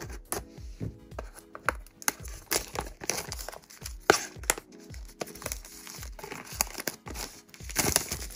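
Plastic shrink-wrap on a cardboard blind box crackling in short bursts as it is snipped with small scissors and peeled off, busier from about two seconds in. Background music with a steady beat plays throughout.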